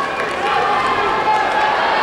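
Spectators and coaches shouting in a sports hall during a sambo bout: a steady din of many overlapping voices, some calls held long.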